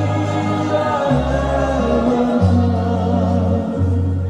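Music with a choir of voices singing over held low notes that change pitch every second or so.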